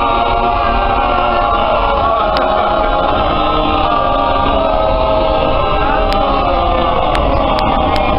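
A group of singers performing a cappella in close harmony, holding long, sustained chords that shift slowly in pitch.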